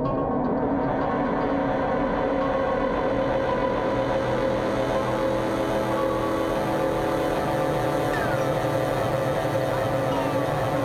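Dense ambient drone of loop-processed instruments: several held tones over a thick, noisy wash, steady in level, with a few faint sliding tones about eight seconds in.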